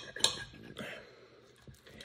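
Table knife cutting pizza on a plate: the blade knocks sharply against the plate about a quarter second in, with a few fainter clicks and scrapes after.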